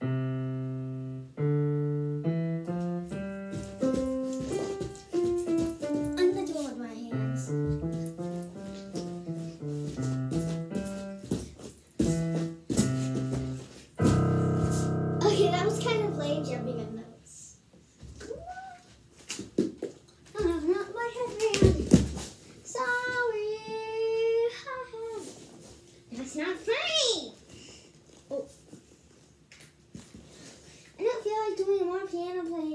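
Digital piano played one note at a time in a simple stepping melody for about twelve seconds, then a loud jumble of many keys pressed at once and held for about three seconds. After that, a child's voice in sliding, wavering sounds with a few knocks.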